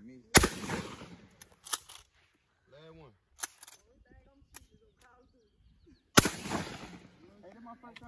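Two shotgun blasts about six seconds apart, each ringing out over about a second, with a few smaller sharp clicks between them.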